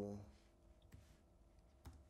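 Near silence with a few faint clicks, a slightly louder one near the end, after the tail of a spoken word.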